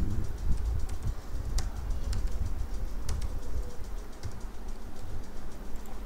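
A few isolated computer keyboard keystrokes while code is edited, over a steady low rumble.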